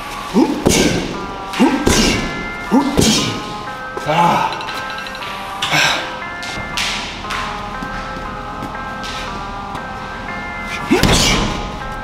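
Rap music playing: a bell-like synth melody over a beat, with a voice coming in at times. Several thuds fall in the first few seconds and again near the end.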